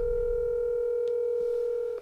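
Telephone ringback tone: one steady ring of about two seconds heard by the caller down the line, starting and cutting off sharply, before the call is answered.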